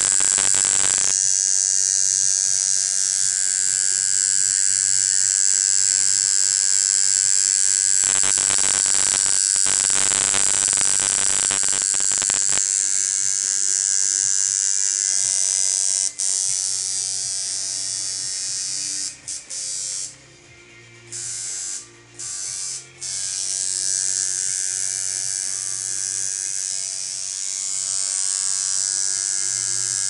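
Tattoo machine buzzing steadily as it works the needle into skin, cutting out briefly a few times about two-thirds of the way through.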